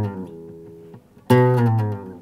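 Nylon-string classical guitar: a chord ringing and fading away, then a second chord struck sharply about 1.3 seconds in and left ringing.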